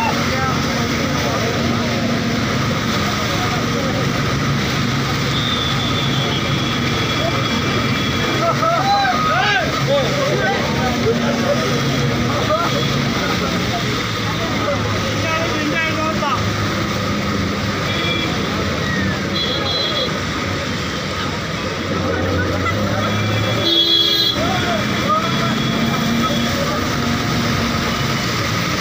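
Floodwater rushing and churning through a street in a steady roar, with traffic noise, vehicle horns sounding now and then, and people's voices calling over it.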